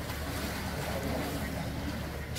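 Swimming pool ambience: a steady low rumble with faint distant voices.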